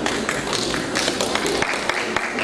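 Audience clapping: a dense run of irregular hand claps between award names.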